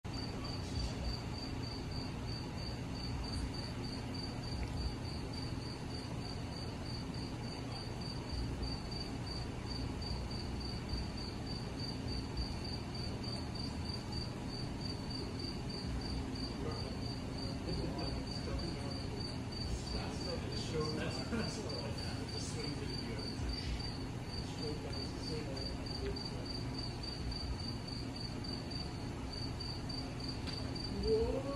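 Crickets chirping in a steady, evenly pulsed high trill, with a low steady hum underneath.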